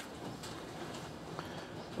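Faint steady background hiss with a single light click about one and a half seconds in.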